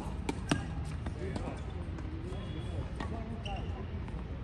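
Tennis ball being struck by racquets and bouncing on a hard court: sharp pops, two loud ones within the first second and fainter ones later, with voices talking in the background.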